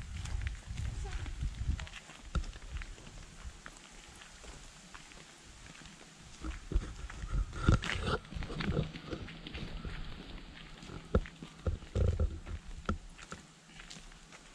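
Wind buffeting the microphone of a walking camera in gusts of low rumble, with footsteps on a dirt path.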